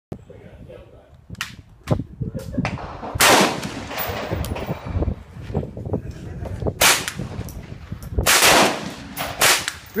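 Gunshots from an HK MP5 .22LR rimfire rifle, fired one at a time at uneven intervals. Several of the shots are louder, with a longer echoing tail.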